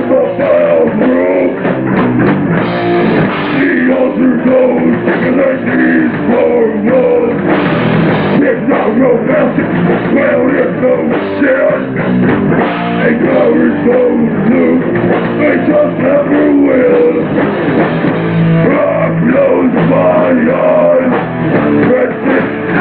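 Hardcore punk band playing live: distorted electric guitars and drum kit at a steady, loud level. The recording sounds muffled, with the high end cut off.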